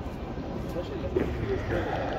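Indistinct voices of people talking in a street crowd, no clear words, over a steady low rumble.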